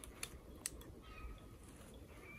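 A few faint, sparse clicks from the plastic bottle and fishing line being handled as a hooked fish is pulled in by hand.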